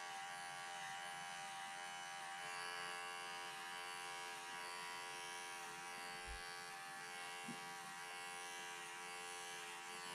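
Cordless electric hair clippers running with a steady buzz, trimming an angora rabbit's wool.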